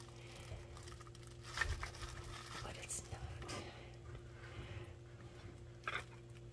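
Faint handling noise from applying seam sealer by hand: soft rustles of plastic gloves and a few small clicks from the sealer tube, over a steady low hum.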